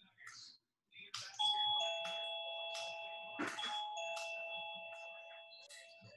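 Doorbell chime: a two-note ding-dong about a second and a half in, sounding again about two seconds later, the notes ringing on and fading slowly.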